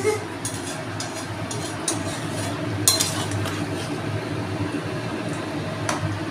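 Metal spatula stirring and scraping a thick curry in an aluminium kadai, with scattered light clinks against the pan over a steady hiss.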